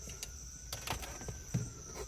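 A few soft clicks and taps of a power cord being pressed in behind a car's plastic A-pillar trim, over a steady high-pitched insect chirr.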